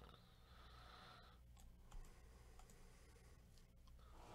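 Near silence with a few faint clicks of a computer mouse, one a little louder about two seconds in.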